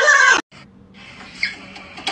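A high-pitched, squeaky electronic voice from a talking toy's speaker, cut off abruptly less than half a second in. Then comes faint background noise with a low hum.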